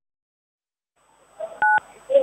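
A single short telephone keypad (DTMF) tone, two pitches sounding together, about a second and a half in, after a second of dead silence and faint background noise.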